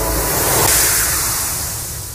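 A rushing whoosh of noise in a horror soundtrack, swelling to a peak about a second in and then slowly fading.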